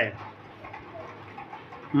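A pause between spoken lines: faint background room noise with a low steady hum.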